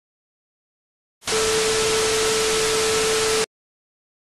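A loud burst of TV static hiss with a steady hum tone under it, starting about a second in and cutting off suddenly after about two seconds.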